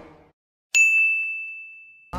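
A single bright bell-like ding struck once about three-quarters of a second in, ringing on one clear high note and fading away over about a second. Before it, the last of a music chord dies out.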